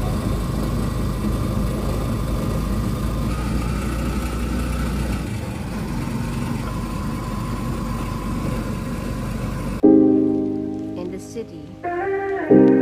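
Steady rushing road and wind noise of a moving motorized tricycle, heard from inside its sidecar. About ten seconds in it cuts off suddenly and piano music begins.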